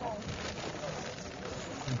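Wool carding machine being turned with wool fed in: a steady, scratchy noise as the toothed drums comb the fleece.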